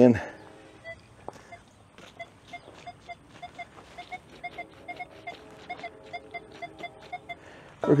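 Nokta Triple Score metal detector giving target tones as its search coil is swept over a buried target. It is a run of short, high beeps, about two to three a second, with some lower tones mixed in during the second half. The detectorist judges the target to lie under the tarp beneath the wood chips.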